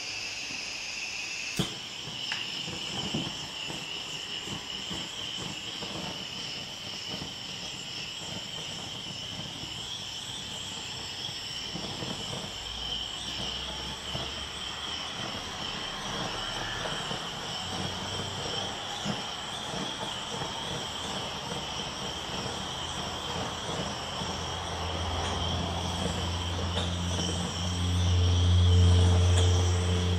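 Handheld butane blowtorch burning with a steady hiss as its flame is passed over wet acrylic paint to pop air bubbles. There is a sharp click about a second and a half in, and a low flame rumble swells louder near the end.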